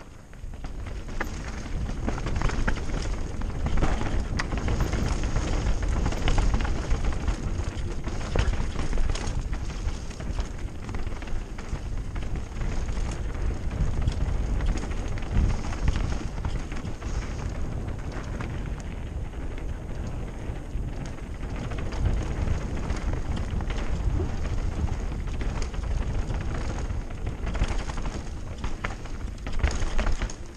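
Mountain bike descending a dirt and loose-stone singletrack, heard from a camera mounted on the rider: constant wind rumble on the microphone, tyres running over dirt and stones, and frequent rattles and knocks from the bike over the bumps.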